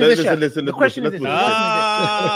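Men talking over one another. About a second and a half in, one man's voice holds a long, drawn-out vowel under the other speech.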